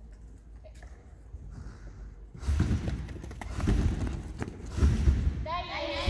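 A gymnast's running footsteps thudding on a padded gymnastics runway, starting about two and a half seconds in and coming several to the second. This is the approach run to the trampoline for a double front somersault.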